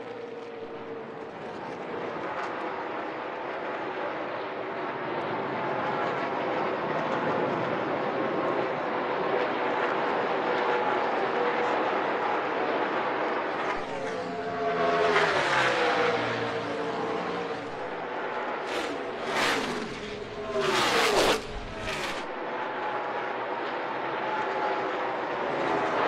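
A pack of NASCAR Cup stock cars running at full speed in the draft: a steady V8 engine drone that slowly grows louder. A car sweeps past about halfway through, then a quick run of close pass-bys follows a few seconds later, each falling in pitch as it goes by.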